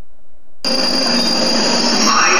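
London Underground train running, a steady rumble with a high whine over it, cutting in suddenly about half a second in.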